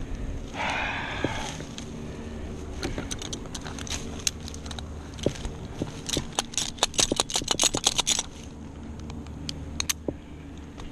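Climbing and rigging hardware clinking and rattling as an arborist handles a rope and slings around a tree trunk, with a brief rustle about a second in and a quick run of clicks and rattles between about six and eight seconds in.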